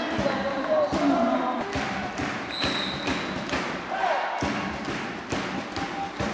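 Indoor volleyball arena: repeated sharp thumps and knocks over crowd noise and players' shouts. A short, high referee's whistle sounds about halfway through.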